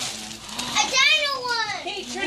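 Young children's excited voices, high-pitched and sliding up and down in pitch, without clear words; loudest from about half a second in until near the end.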